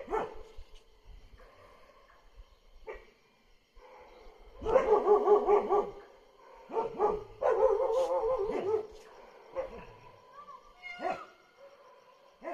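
Dogs barking and whining in two wavering spells, about five and eight seconds in.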